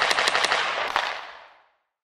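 Show-intro sound effect: a sudden burst of rapid clattering hits that fades away within about a second and a half.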